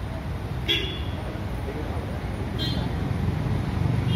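Vehicle engine idling with street traffic around it, and two short high-pitched toots: one about a second in, another near three seconds.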